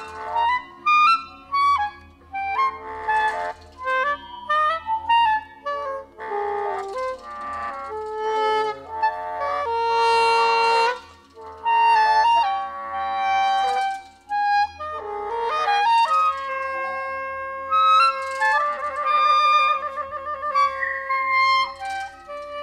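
Solo woodwind melody, likely a clarinet, played in short phrases with quick runs and a trill near the end, over a steady low hum.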